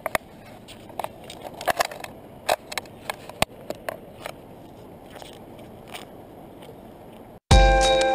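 Scattered light snaps and clicks of dry sticks and twigs being gathered and dropped onto a kindling pile on bare rock, thickest in the first few seconds. Near the end the sound cuts out and loud background music comes in.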